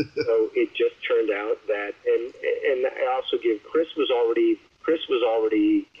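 Speech only: a person talking continuously, with no other sound.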